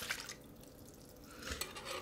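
Whole milk poured from a glass measuring cup into a skillet of warm broth: a faint liquid pour that grows a little louder near the end.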